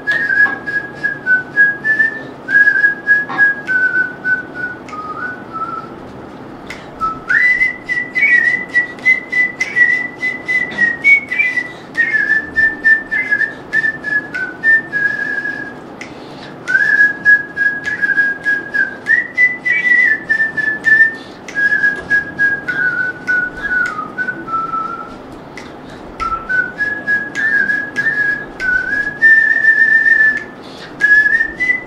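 A person whistling a song melody: one clear, pure tone moving in stepwise phrases, with a short pause about every ten seconds.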